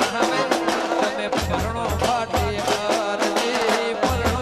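Live Gujarati folk music: dhol drums beaten with sticks in a quick, steady rhythm, with deep thumps coming in clusters, under a male voice singing a wavering melody.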